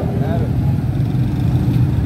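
Busy market-street ambience: a steady low rumble of motorcycle and vehicle traffic, with a brief snatch of a passer-by's voice at the start.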